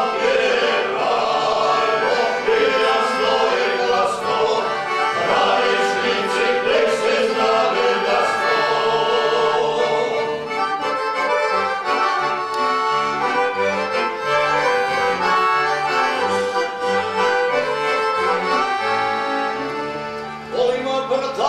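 A men's folk singing group sings a traditional song in several voices, accompanied by a piano accordion. About halfway through, the voices thin and the accordion's rhythmic bass comes more to the fore.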